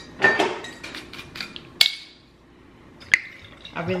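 Dishes knocking and clinking as they are handled: a cluster of clatters in the first second and a half, a sharp clink just before two seconds, and another about three seconds in.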